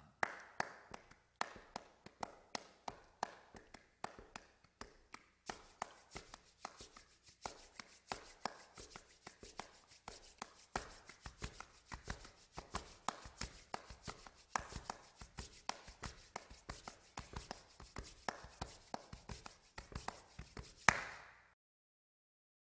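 Body-percussion samba rhythm from three people: hand claps, palms brushing together and chest pats in a quick, steady pattern of sharp strikes. It grows denser about five seconds in and ends with a single louder hit just before the end.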